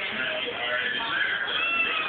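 A kitten meowing, one short arched call near the end, over television music and speech in the room.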